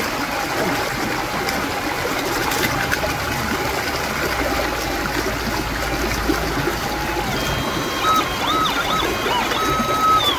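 Steady rush of a stream over a faint, steady metal-detector threshold tone from a Minelab SDC 2300. In the last couple of seconds the detector's tone jumps higher and bobs up and down several times, a target signal from gold still in the crevice material.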